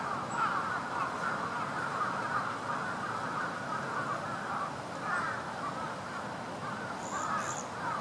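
A dense, unbroken chorus of many birds calling over one another, a constant chatter of short warbling calls. Two brief high-pitched notes stand out about seven seconds in.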